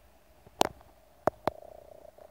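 Three sharp handling clicks: one a little over half a second in, then two close together about a second later, over a faint steady hum.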